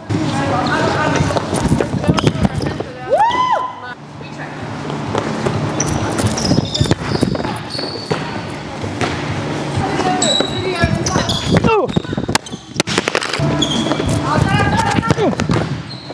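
Volleyballs being struck by forearms and hands and hitting the court in repeated sharp smacks, with short high squeaks of sneakers on the sport-court floor and players' voices calling out in the background.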